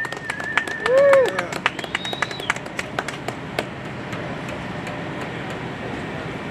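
Scattered hand clapping from a small crowd, with one drawn-out sung or called-out syllable about a second in and a steady high tone for the first second and a half. The claps thin out and stop about three and a half seconds in, leaving steady outdoor street noise.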